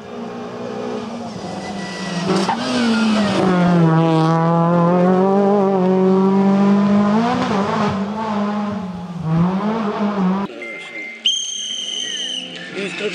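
Kia Picanto rally car's engine working hard through a tarmac bend, getting louder as it comes through and holding high revs with brief dips in pitch about two and a half, seven and a half and nine and a half seconds in. The sound breaks off abruptly near the end and gives way to a high thin whine.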